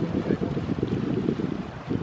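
Wind buffeting the microphone outdoors, a dense, fluttering low rumble.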